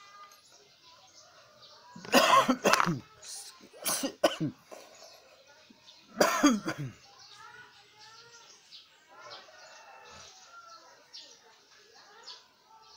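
A person coughing close by, three loud coughs spread over the first seven seconds, with faint bird chirps in the background.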